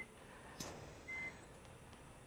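Hospital patient monitor beeping: a short, single-pitched high beep about a second in, one of a steady run of beeps roughly 1.3 seconds apart.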